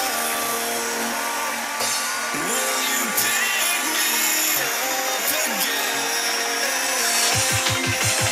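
Makina dance track in a breakdown: held buzzy synth chords with no bass, with several falling pitch swoops. About seven seconds in, the fast pounding kick and bass come back in.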